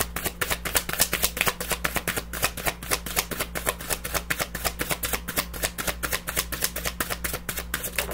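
Tarot deck shuffled by hand: a rapid, even run of card slaps and clatters, about six or seven a second, that stops near the end.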